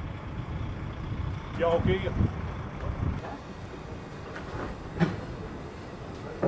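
Articulated lorry's diesel engine rumbling low as the lorry drives slowly past.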